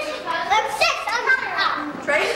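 Several young children talking and calling out over one another, with high-pitched, overlapping voices.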